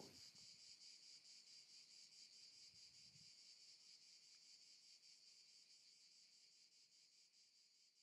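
Faint, steady high-pitched chirring of insects, fading out gradually toward the end.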